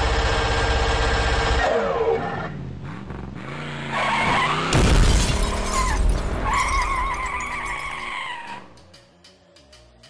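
Sound effects over an animated intro logo. A steady, engine-like drone winds down about two seconds in, a sudden crash like shattering glass comes near five seconds, and a wavering, tyre-squeal-like sound follows. It fades out after about eight seconds.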